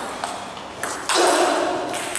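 Celluloid or plastic table tennis ball being struck by bats and bouncing on the table: a few sharp clicks that echo in a large hall. The loudest comes just after a second in.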